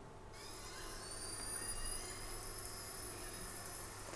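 A recording of killer whale calls played over a hall's loudspeakers, faint: several thin, high-pitched whistles held steady, one gliding up about a second in.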